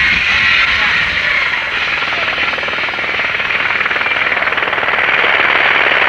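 Helicopter flying near the mountaintop: a steady, loud engine and rotor noise with a fast, even pulsing.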